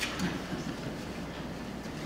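Room tone of a meeting chamber: a steady low rumble and hum, with a brief click right at the start.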